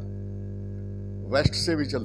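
Steady electrical mains hum, a low buzz with a ladder of overtones, loud in the microphone's recording. About one and a half seconds in, a man starts speaking again in Hindi, with a pop as he begins.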